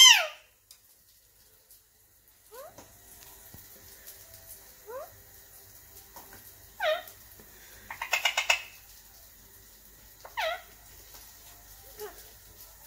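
Parakeets, an Indian ringneck and an Alexandrine, calling: short squawks that slide down in pitch, one every couple of seconds, the loudest right at the start. About eight seconds in comes a quick chattering run of rapid notes.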